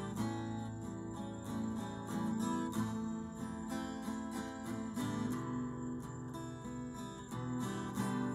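Acoustic guitar strummed in a steady rhythm, full chords ringing on.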